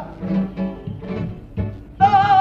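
Spanish guitars of a carnival comparsa playing alone in a short break in the choir's singing: plucked and strummed chords over low bass notes, fairly soft, with the voices coming back in at the very end.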